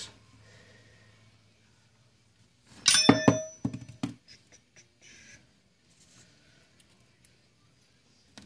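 A single metallic clank with a brief ringing tone about three seconds in, as the shotgun's metal receiver and parts are handled on the workbench. A few lighter clicks follow, then faint scattered taps of small parts.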